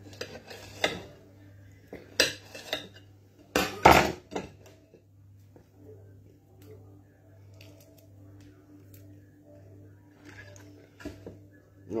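A knife knocking and scraping on a plate and a plastic ready-meal tray: several sharp clinks in the first four seconds, the loudest about four seconds in, then only a low steady hum with a few faint clicks.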